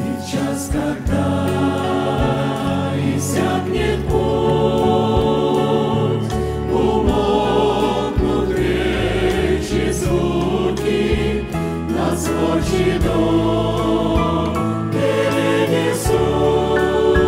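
Mixed choir of men's and women's voices singing a Christian hymn in Russian over an instrumental backing with a sustained bass line.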